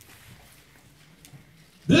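A pause in a man's speech: faint room tone with a low steady hum and one soft click, then his voice comes back in near the end.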